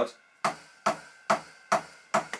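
Four even drumstick hits on the ride cymbal pad of an Alesis DM10 electronic drum kit, heard with EZdrummer's samples. Struck hard, the ride pad comes out as a hi-hat rather than the ride: a mis-triggering of the pad.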